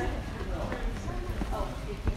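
Voices of people talking close by, with a few hard footsteps on a paved garden path and a low rumble of wind or handling on the microphone.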